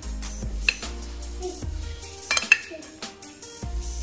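A metal spoon stirring and tossing chopped salad in a ceramic bowl, clinking against the bowl several times, most sharply about two and a half seconds in. Background music plays throughout.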